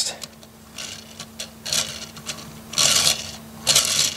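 Small plastic LEGO race car wheels rolling across a flat surface as the toy is pushed back and forth: a rasping rub in three short runs, the longest and loudest about three seconds in.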